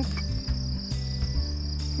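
A steady high-pitched insect buzz runs on unbroken, over background music of low sustained notes that shift every half second or so.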